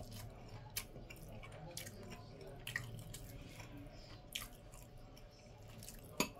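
A person faintly chewing a mouthful of noodles with corned beef and sausage, with a few soft clicks scattered through, over a low steady background hum.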